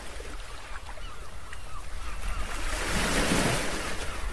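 Ocean waves surging as a background sound effect, the wash of a wave swelling about three seconds in. A few faint short chirps sound in the first two seconds.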